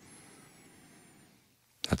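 Faint room noise for about a second, then near quiet, and a man's voice begins again just before the end.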